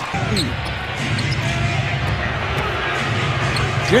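Basketball arena game sound: steady crowd noise with a basketball bouncing on the hardwood court during live play.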